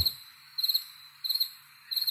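Cricket chirping: four short trilled chirps, evenly spaced about two-thirds of a second apart, the stock 'crickets' effect that marks an awkward silence after a remark falls flat.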